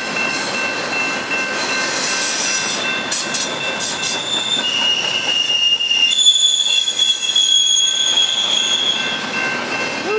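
Double-stack intermodal freight cars rolling past on the rails, a steady rumble of wheels and cars with high-pitched wheel squeal over it. The squeal comes as several held, whistling tones that shift pitch and swell in the middle, loudest about six to eight seconds in.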